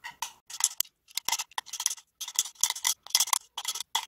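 Metal spoon scraping and ticking against the side of a glass beaker as it stirs thick cream, in short irregular strokes, about two or three a second.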